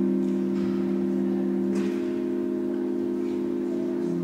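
Organ music: slow, sustained chords of steady held notes, with the lowest note moving to a new pitch about two seconds in.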